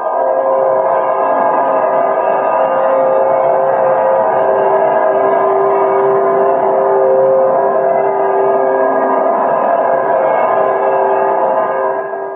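Film soundtrack's eerie sustained drone: a loud chord of several steady tones held unbroken, a supernatural effect for a soul leaving the body.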